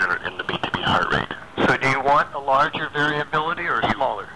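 Speech: a voice talking continuously.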